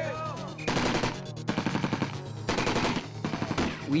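Automatic rifle fire in four rapid bursts, each a second or less long.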